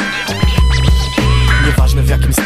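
Hip hop beat with DJ turntable scratching: quick sweeping scratches of a record riding over a steady bass line and drums.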